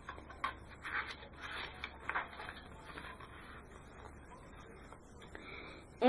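Soft rustling of a paper picture book being handled and its pages turned, several faint rustles in the first two seconds or so, then only a low hum.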